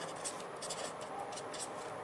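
Felt-tip pen scratching on paper in a quick run of short strokes as handwriting is written, stopping shortly before the end.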